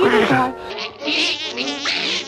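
Cartoon housefly buzzing, its high buzz wavering up and down in pitch as it flies about, over soft background music. It starts just under a second in, after a short voice at the very start.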